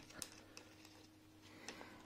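Near silence, with a few faint light clicks of small laser-cut fibreboard kit parts being handled on a wooden table.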